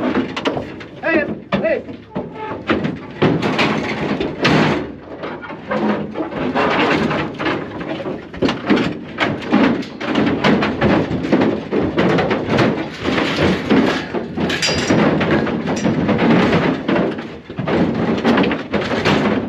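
Heifers being loaded into a livestock trailer: repeated knocks and bangs from hooves and bodies against the trailer floor, panels and gates, with people's voices under it.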